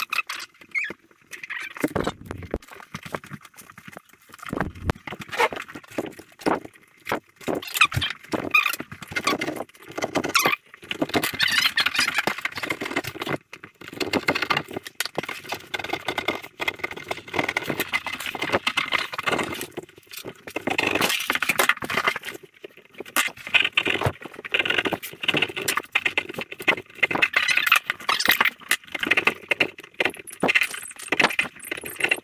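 A knife sawing and cutting through a pumpkin's rind and flesh close to the microphone: many short scraping strokes in quick runs, with brief pauses between.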